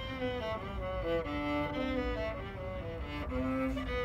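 Solo cello, bowed, playing a melodic line of short notes that change every quarter to half second.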